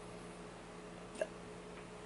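Quiet room tone with a faint steady hum, broken once about a second in by a very short small sound.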